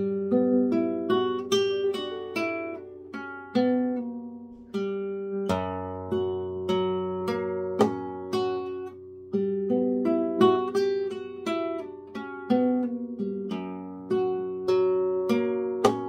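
Nylon-string flamenco guitar (a Manuel Rodriguez Model FF) playing a short Soleá falseta: arpeggiated notes plucked one at a time at an even pace over a ringing bass note.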